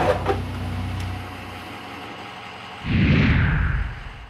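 Pickup truck engine idling with a steady low hum that fades out after about a second. Near the end comes a loud whoosh that falls in pitch, a transition sound effect.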